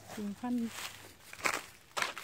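Footsteps in rubber boots on dry leaf litter and straw mulch: two crunching steps, the louder one about a second and a half in.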